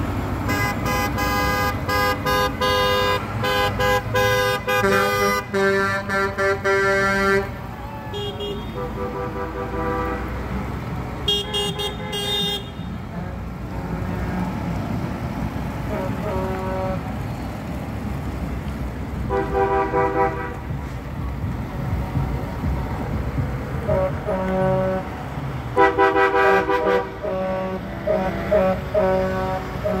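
Parade vehicles' horns honking in held blasts over the low running of passing tractor engines: a long stretch of horns for the first seven seconds, short blasts around 11 and 20 seconds in, and more honking from about 24 seconds.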